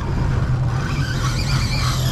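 Boat's outboard motor running steadily in gear, with the fishing reel's drag squealing in a high, wavering whine from about half a second in as a hooked Spanish mackerel pulls line.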